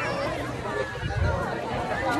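Indistinct chatter from a crowd of people, several voices talking at once, with no single clear speaker.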